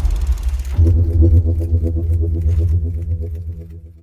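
Deep, steady bass tone of a logo-intro sound effect, coming in about a second in and fading out near the end.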